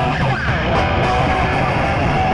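Punk rock band playing live and loud, with distorted electric guitar most prominent.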